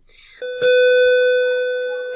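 An electronic beep: one steady held tone, starting about half a second in and lasting well over a second.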